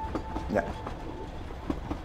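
Moving-train ambience: a steady low rumble with a few irregular clacks of wheels over rail joints.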